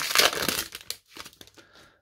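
Foil wrapper of a 2021 Score football card pack crinkling and tearing open as the cards are pulled out. It is loudest in the first second, then fades to smaller rustles.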